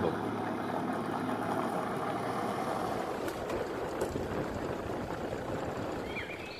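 Open safari vehicle driving off on a gravel road: a steady engine drone mixed with tyre noise.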